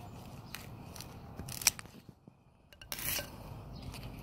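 Scissors snipping pups off an echeveria clump. There are a few sharp snips, the loudest about a second and a half in, then a short scraping rustle of blades and leaves about three seconds in.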